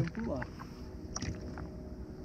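Quiet boat-on-water ambience: a low wash of water around a small fishing boat with a faint steady hum underneath and a light click a little past a second in.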